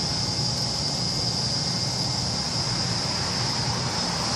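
Steady low machine hum with a constant high-pitched hiss; no knocks, clicks or changes.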